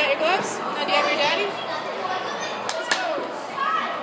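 Indistinct voices and chatter echoing in a large indoor hall, with a couple of sharp clicks or knocks just before three seconds in.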